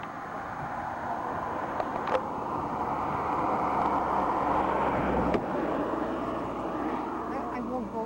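Wind rushing over a camcorder microphone, swelling about halfway through and then easing, with a couple of sharp handling knocks as the camera moves.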